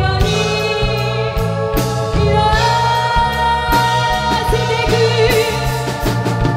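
Live gothic new-wave band music: a female voice singing long held notes, wavering near the end, over bass guitar and drums.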